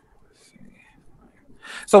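A short pause in conversation with only faint low background noise, then a man's voice starts speaking again near the end.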